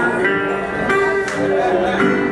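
Metal-bodied resonator guitar played fingerstyle as the opening of a blues number: a few sharply plucked notes, each ringing on.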